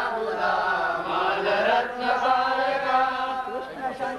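Sanskrit mantras chanted by a male voice in long, held, sliding notes, with short pauses for breath.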